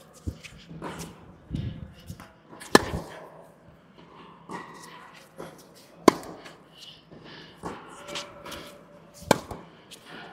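Tennis rally: a racquet strung with Big Hitter Silver round polyester string strikes the ball three times, about three seconds apart, each a sharp crack. Fainter hits from the far end of the court and ball bounces come in between. Each sound echoes briefly in the indoor hall.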